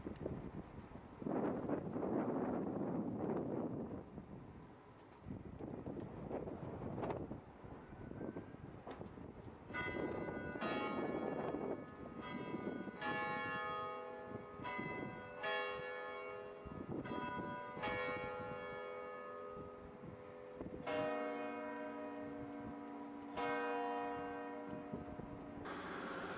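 Church bells ringing: a run of separate strikes from several bells of different pitch, about one a second, each ringing on and fading, starting about ten seconds in. Before the bells, a few loud gusts of rushing noise.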